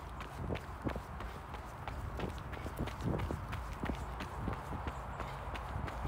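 Running footsteps on a gravel path, about three crunching strides a second, over a steady low rumble.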